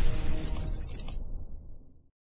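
The end of a radio-station jingle: a crashing sound effect and a held musical chord dying away, the high end dropping out about a second in and the rest fading out about a second later.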